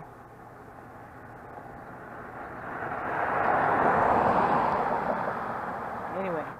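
A vehicle passing by on the road: a rush of noise that swells, is loudest about four seconds in, and fades again.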